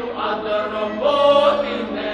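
Traditional Ukrainian folk song sung by voices in harmony, with a louder held note about halfway through.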